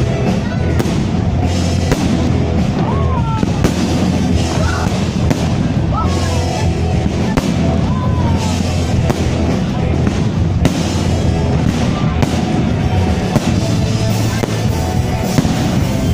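Fireworks salute going off in frequent, irregular bangs over loud music.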